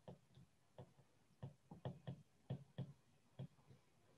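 Stylus tapping and clicking on a tablet screen while handwriting: about eight faint, irregular ticks.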